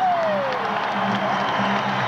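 A crowd cheering and applauding over an acoustic guitar that keeps strumming; the last sung note of a verse falls off in pitch in the first moment.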